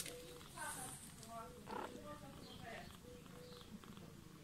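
Faint purring of a mother cat while her kitten nurses at her belly.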